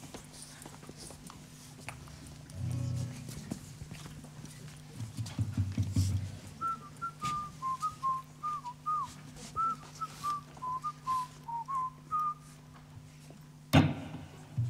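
A person whistling a halting melody of short, slightly wavering notes for about six seconds, over a steady low electrical hum. A few low thuds come before the whistling, and a sharp hit comes just at the end.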